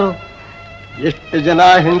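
A man's voice pauses, leaving a steady electrical buzz on an old film soundtrack, then resumes speaking about a second in.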